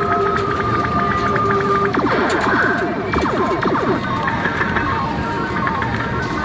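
Arcade din: electronic game music and sound effects from the machines, with many short falling-pitch blips. Two held tones stop about two seconds in.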